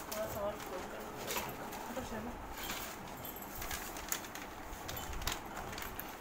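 Paper sheets being handled and spread out, with short crisp rustles and crinkles every second or so. A few faint low calls sound in the background.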